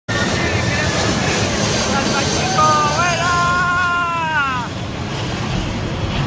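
The jet engines of the Boeing 747 Global SuperTanker make a loud, steady rush as it passes low overhead. Between about two and a half and four and a half seconds in, a drawn-out pitched sound rides over the roar and then slides down in pitch.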